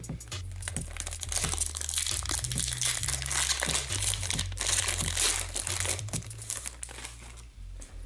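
Crinkling and rustling of glossy trading cards being handled and flipped through by hand, densest in the middle and thinning out near the end. Background music with a low bass line runs underneath.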